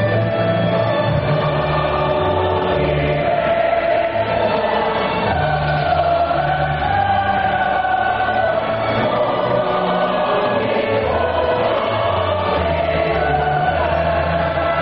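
Choral music: a choir singing long held notes over a bass line that steps from note to note.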